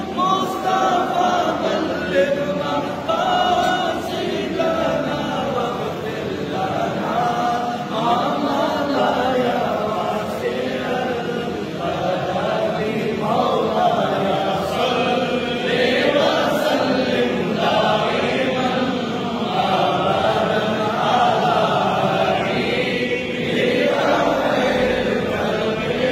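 A group of men's voices chanting together in unison, a continuous devotional recitation with no pauses.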